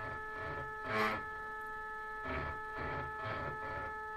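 Stepper motors of a homemade coil winder, the geared spindle stepper and the X-axis stepper, running together in a slow synchronized jog: a steady whine of several pitches with an uneven mechanical noise that swells every half second or so. The geared stepper is a noisy one.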